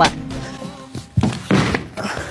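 A person falling to a studio floor and knocking into wooden set furniture: a sharp knock at the start, then two louder thuds a little past the middle, over background music.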